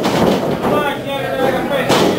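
Voices shouting and talking over a wrestling match, with one sharp slam on the wrestling ring near the end.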